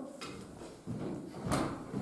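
Footsteps on a wooden floor, quiet, with one sharper step about a second and a half in.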